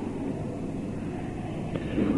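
Steady background noise of an old lecture recording, a low rumble with hiss, in a pause between spoken sentences.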